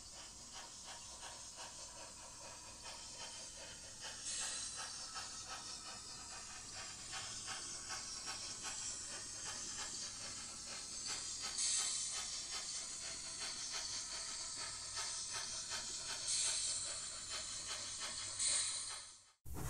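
Steam locomotive sound: a rapid, even chuffing beat, with louder spells of hissing steam a few seconds in, near the middle and near the end.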